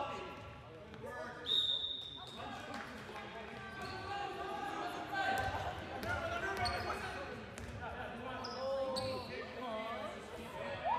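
Handball bouncing on a hardwood gym floor during play, with indistinct players' and spectators' voices echoing in the gymnasium. A short high squeak or whistle sounds about one and a half seconds in.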